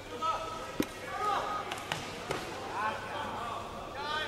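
A few sharp thumps of gloved punches and padded kicks landing in a kickboxing bout, the loudest a little under a second in, with shouting voices around the mat throughout.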